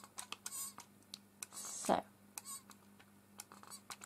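Hand-held trigger spray bottle spritzing water onto dabs of paint on a palette to thin them: three short hisses, with small clicks of the trigger and a light knock about two seconds in.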